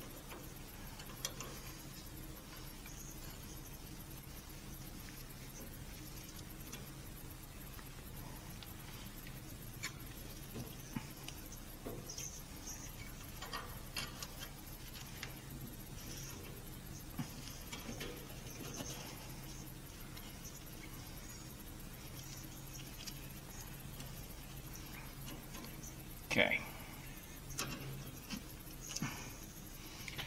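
Faint handling noises of a brake line being fitted: small metal clicks and rustling as gloved hands work the bent line and its fitting into place, over a steady low hum, with a few louder clicks near the end.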